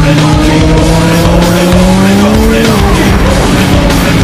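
Yamaha MT-09's three-cylinder engine running on the road, its pitch climbing slowly for a couple of seconds and then dropping away a little under three seconds in, with music playing alongside.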